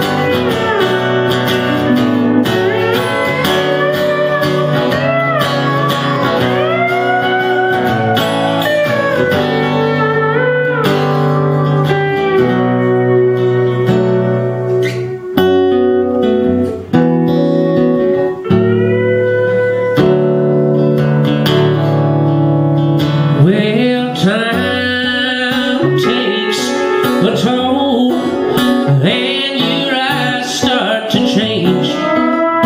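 Pedal steel guitar playing sliding, bending melody lines over a strummed acoustic guitar: an instrumental break in a live country song.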